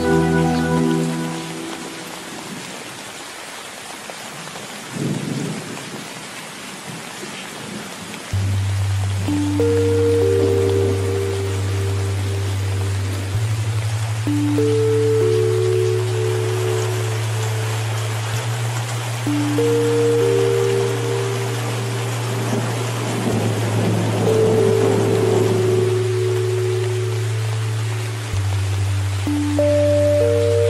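Steady heavy rain with thunder rumbling twice, briefly about five seconds in and longer a little past twenty seconds. Soft music with slow held notes over a sustained low bass fades out just after the start and comes back in about eight seconds in.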